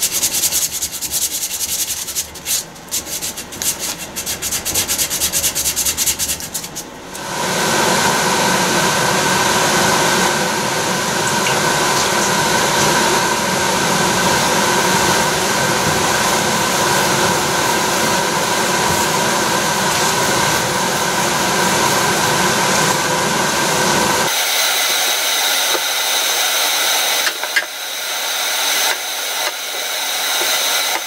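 Power-tool sanding on wood. For about the first seven seconds a tool works the wood in uneven, stop-start passes. Then comes a steady motor whir with a constant whine, which changes to a smoother, steady hiss about three-quarters of the way through.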